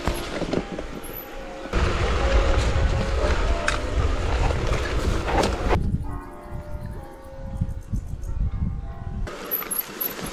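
Mountain bike riding down a rough grassy trail: tyre noise and rattling of the bike over the ground, with heavy wind rumble on the microphone through the middle. The sound changes abruptly twice, dropping to a quieter stretch with faint steady tones about six seconds in.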